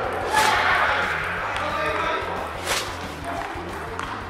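Badminton racket with a plastic bag over its head swung overhead twice, about two seconds apart, each swing a short sudden swish of the bag rushing through the air.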